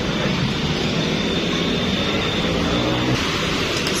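Steady road traffic noise: motor vehicles running and passing on a busy street, with a low engine hum.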